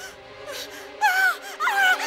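A woman wailing and crying out in distress, starting about a second in with a run of cries that swoop up and down in pitch.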